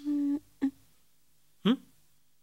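A short, steady hummed 'mmm' from a voice, followed by a brief click-like sound and, about a second and a half in, a short rising 'hm?'.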